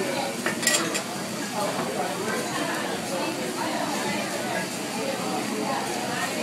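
Metal spatula clinking and scraping on a hibachi flat-top griddle, with a few sharp clinks under a second in, over food sizzling on the hot plate.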